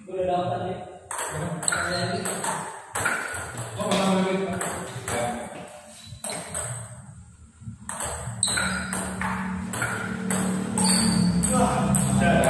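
Table tennis ball clicking back and forth off the paddles and the Donic table in quick rallies, roughly two hits a second, with a lull around six seconds in between points.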